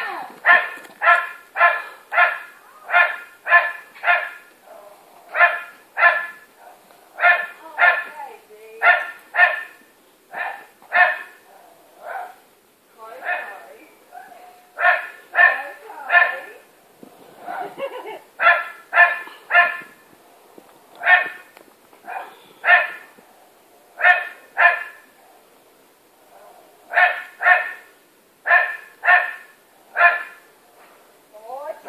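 Labrador barking over and over in runs of several barks, two or three a second, with short pauses between the runs.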